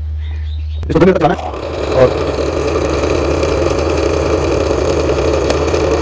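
Electric blender switched on about a second and a half in and running steadily, blending phalsa berries with water into juice.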